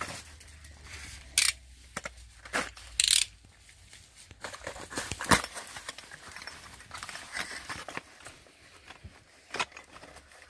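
Small cardboard box being handled and opened by hand: scattered rustles and sharp clicks of the flaps and tape, with louder scraping strokes about a second and a half, three and five seconds in.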